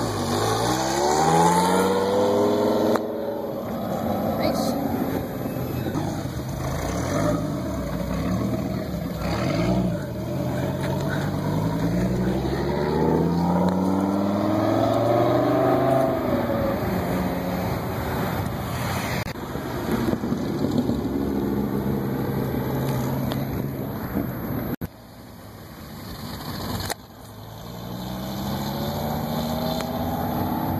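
Dodge Viper V10 engines accelerating past one after another, each revving up with rising pitch as it shifts through the gears. The sound drops away sharply twice near the end before another car pulls away.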